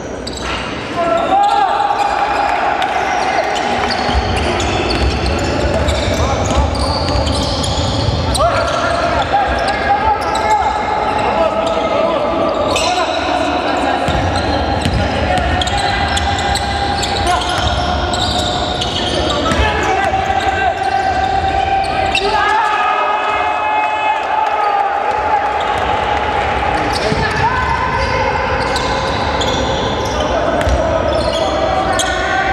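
Live basketball game in a large echoing gym: the ball bouncing on the hardwood court, with players' voices. Over it run sustained tones that shift pitch every few seconds.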